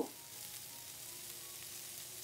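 Onion, chana dal, dried red chilies and freshly added chopped tomato frying in coconut oil in a non-stick pan over medium heat: a faint, steady sizzle.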